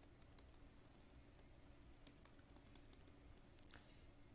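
Near silence with a few faint, scattered clicks from a stylus tapping on a pen tablet while drawing dashed lines.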